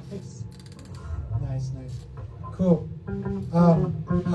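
Electric guitar and bass guitar noodling softly between songs, with a voice speaking over them.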